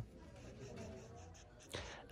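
Faint scratchy rubbing of a leather-gloved hand handling a denim jacquard tote bag, over low hiss.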